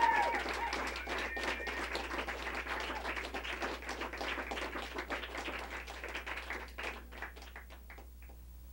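Small audience applauding with a few whoops near the start. The clapping thins out and dies away to the last scattered claps by the end.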